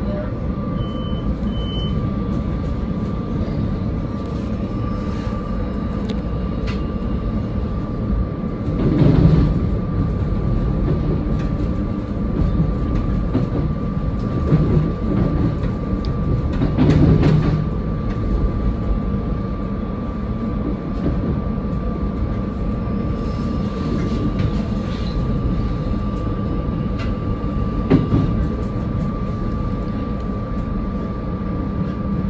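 SEPTA electric commuter train running along the track, heard from the cab: a steady rumble of wheels on rail under a thin steady high hum. Louder rattling surges come about nine and seventeen seconds in, and there is a sharp click near the end.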